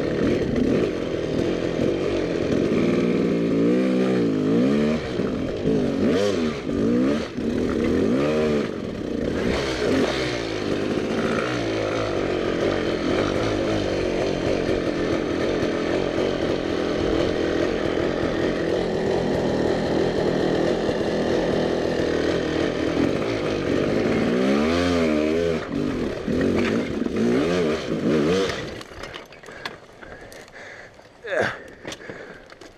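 Off-road dirt bike engine revving up and down over and over as it is worked over rocks, the pitch climbing and falling in short surges. Near the end the engine stops and the sound drops away as the bike goes over onto its side.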